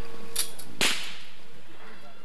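Two sharp cracks about half a second apart, the second louder and trailing off briefly: firecrackers going off.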